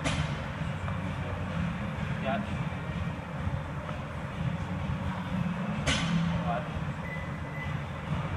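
A steady low rumble of indoor room noise, with two sharp clicks: one at the very start and one about six seconds in.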